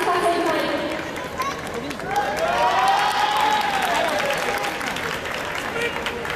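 A voice calling out in one long, drawn-out phrase whose pitch rises and then falls, echoing through a large arena, with scattered clapping from the crowd.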